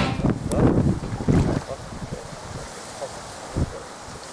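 Wind buffeting the microphone, with water splashing and sloshing as a carp is drawn into a landing net; busiest in the first second and a half, then quieter with a brief knock or two.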